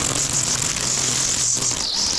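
String trimmer running at full throttle, a steady high whine over a low engine note, trimming grass at a bed edge; the pitch dips briefly near the end.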